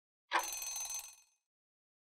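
A short ringing bell sound effect, about a second long, marking the end of the quiz countdown timer: time is up.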